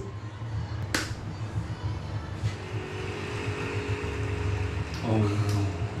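A single sharp clink about a second in, from glasses knocked together in a toast. From about halfway, quiet held string notes of an orchestral song intro come in over a low steady hum.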